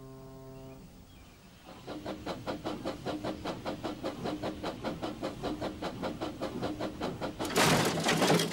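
A train's rhythmic running sound, a regular beat about five times a second, starts about two seconds in. It is preceded by a steady low horn-like tone that stops about a second in. A loud burst of hiss comes near the end.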